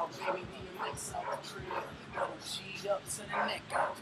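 Pit bull dogs barking over and over in short, irregular bursts, with voices in the background.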